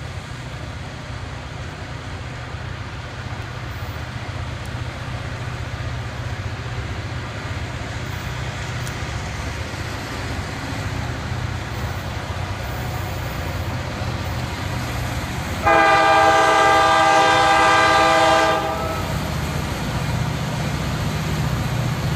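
An approaching diesel freight train: a steady low engine rumble slowly grows louder, then about three-quarters of the way through the locomotive's five-chime air horn, a Nathan K5LA, sounds one long blast of about three seconds, the opening blast of its grade-crossing signal.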